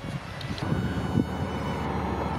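Wind blowing across the microphone, a steady rumbling noise with no distinct events.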